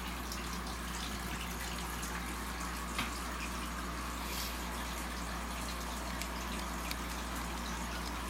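Steady, even background hiss with a low hum underneath, and a couple of faint clicks, about 3 s apart, from the camera being handled.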